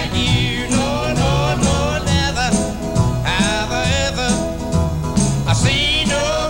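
A country song performed live by a male singer backed by a band, playing steadily.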